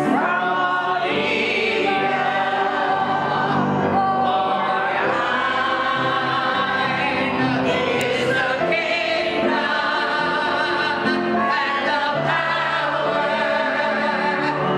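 A hymn sung by a congregation, with instrumental accompaniment holding steady chords and a bass line that moves in steps.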